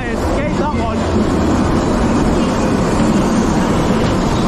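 Dodgem (bumper car) running across the track, a steady loud rumble with noise, while a voice calls out with a rising and falling pitch in the first second.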